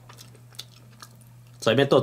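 Quiet chewing of a mouthful of pizza with a few faint mouth clicks, over a steady low hum; speech starts near the end.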